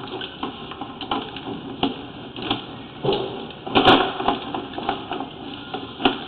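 Irregular knocks and rattles of a sewer inspection camera's push cable being worked back through the line, with a louder clatter about four seconds in.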